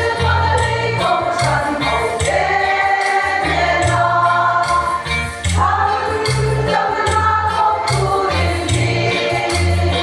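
Women's choir singing a church song together in many voices, with a low bass line running under the singing.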